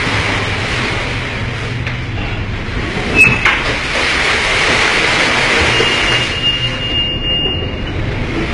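Steady rush of storm wind and heavy sea heard aboard a container ship, over a low hum from the ship. There is a sharp knock about three seconds in, and a thin high whistle near the end.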